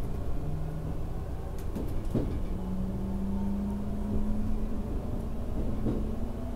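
JR Central 383-series electric train accelerating away from a station, heard from inside the passenger car. The inverter and traction motor whine steps up in pitch early on, then holds as one tone that slowly climbs, over the running rumble. A single sharp clack comes about two seconds in, as the wheels pass a rail joint or points.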